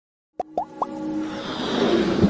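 Electronic intro music for a logo animation: silence, then three quick rising blips in a row, followed by a swelling riser that builds toward the end.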